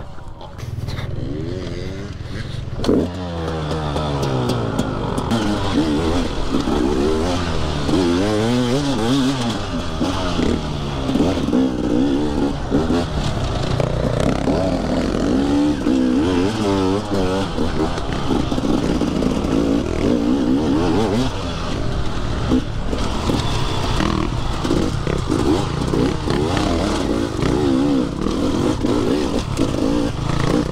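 Dirt bike engine running, low and steady for the first few seconds, then revving up and down again and again as the bike accelerates and shifts along a dirt trail.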